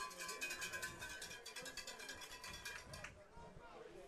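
Faint music from a stadium PA system, with distant voices, breaking off about three seconds in.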